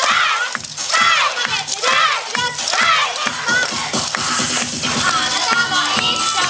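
Up-tempo yosakoi dance music playing loudly, with many dancers' voices shouting and calling out together over it.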